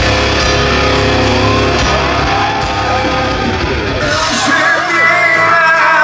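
Rock band playing live through a PA: electric guitar and band with a male voice singing. The low bass end drops away about four seconds in.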